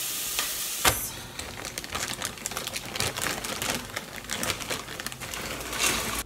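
Onion frying in a stainless steel pot: a crackling sizzle full of small pops and clicks, with a sharp knock about a second in. Near the end it grows briefly louder as dry soya mince is tipped in from a bag.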